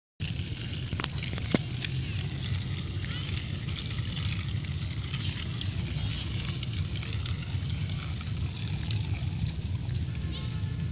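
Wind buffeting the microphone outdoors, a steady low rumble, with faint high chirps throughout and two sharp clicks in the first two seconds.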